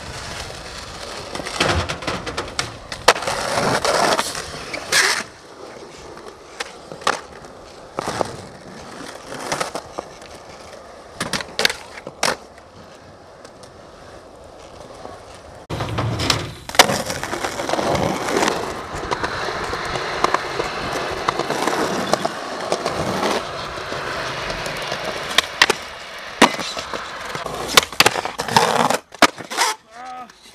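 Skateboard wheels rolling over rough concrete, broken by repeated sharp clacks of the board popping and landing.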